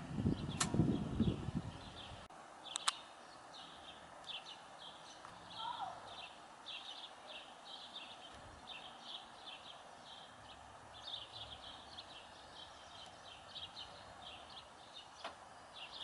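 Faint outdoor ambience with a small bird chirping repeatedly, short high chirps a few per second, and one lower falling call about six seconds in. The first two seconds carry a brief low rumbling noise.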